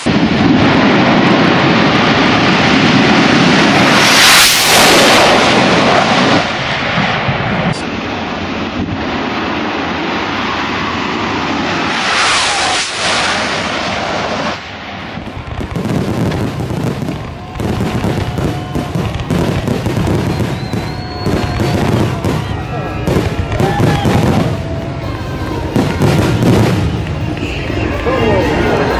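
Two drag-racing cars making a full-throttle quarter-mile run at about 300 mph: a heavy roar sweeps past about four seconds in, with a second passby a few seconds later. After an abrupt change about halfway through, fireworks go off: a rapid run of bangs and crackles with whistling shells rising through them.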